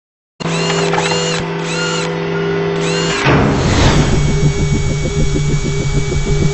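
Sound effects for an animated logo intro. A steady electronic hum with a run of high, arching chirps is followed about three seconds in by a whoosh, then a fast, rattling, motor-like buzz.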